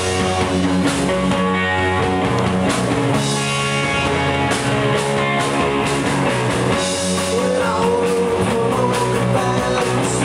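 Live rock band playing loudly and steadily: electric guitars over a drum kit.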